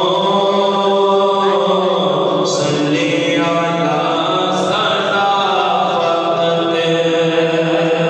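A man singing a naat, an Urdu devotional poem, unaccompanied into a handheld microphone, in long held melodic notes.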